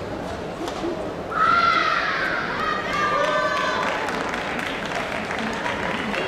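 Voices calling out in a large sports hall, loud and echoing, starting about a second and a half in over the hall's steady background murmur.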